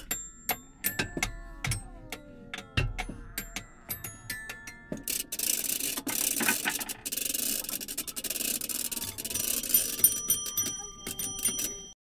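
Hand-made Foley sound effects. A quick string of clicks and knocks, some leaving short bell-like rings, then a few seconds of steady rubbing noise, then more clicks with held chiming tones near the end.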